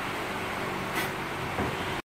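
MIG welder arc running steadily as a steel cross brace is welded, a fan running behind it.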